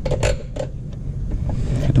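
A few sharp plastic clicks and knocks as the stock plastic airbox housing of a 2010–15 Camaro is worked loose by hand, over a steady low rumble.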